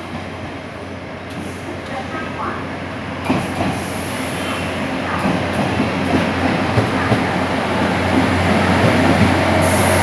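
Taiwan Railways DR3100 diesel multiple unit pulling into a station, its engine and wheels on the rails growing steadily louder as it draws alongside the platform, with a few sharp knocks about three seconds in.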